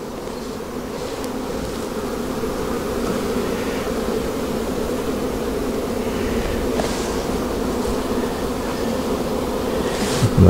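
Honey bees buzzing in an open hive, a dense steady hum of the whole colony that grows a little louder as the frames are worked.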